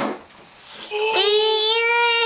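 A young child's voice singing one long, steady held note, starting about a second in.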